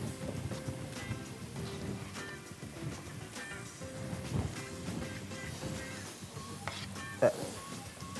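Quiet background music over a low, steady sizzle of vegetables frying in a pot, with a few soft knife taps on a plastic cutting board as chicken is diced.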